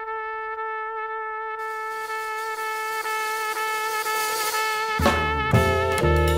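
Jazz recording opening on a long held trumpet note, with a cymbal wash building underneath. About five seconds in, the rest of the band comes in with bass, keyboard chords and drums.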